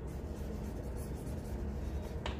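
Felt-tip marker writing on a whiteboard: faint short strokes of the tip on the board as a word is written, over a steady low hum.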